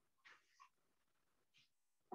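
Near silence: room tone, with a couple of very faint brief sounds.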